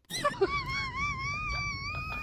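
A person wailing: one high, drawn-out cry whose pitch wavers up and down, starting with a few short broken sounds and then held for over a second and a half.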